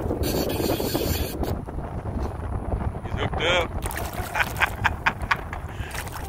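Wind buffeting the microphone throughout, with a short voice-like sound about three and a half seconds in and a quick run of about six sharp clicks shortly after.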